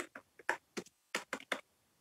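Computer keyboard typing: a quick, uneven run of about nine keystrokes over the first second and a half.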